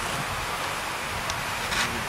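Steady rushing noise of wind on the camcorder microphone, with a faint brief hiss about a second in and again near the end.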